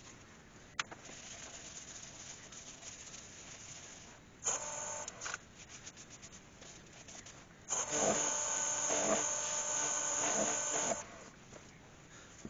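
Wax being rubbed onto an ash bowl turning on the lathe: a short spell of rubbing about four and a half seconds in, then a longer, louder spell of about three seconds, each with a faint whining tone running through the rub.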